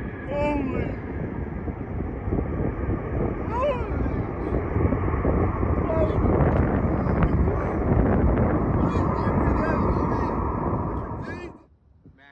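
Jet airliner's engines heard close by from beside the runway: a loud rushing noise with a steady whine, building over several seconds, then cut off suddenly near the end.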